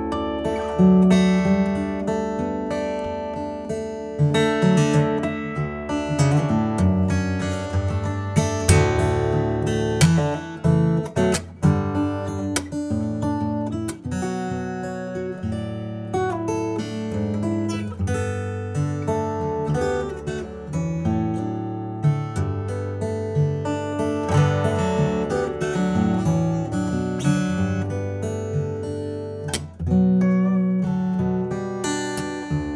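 Breedlove Exotic King Koa koa-bodied acoustic guitar played fingerstyle: a calm solo instrumental piece of plucked notes and chords ringing into one another, with a deep, full tone.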